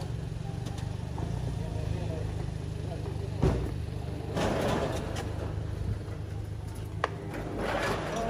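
Steady low rumble of an idling car engine, with people talking indistinctly in the background and two short knocks, one about three and a half seconds in and one about seven seconds in.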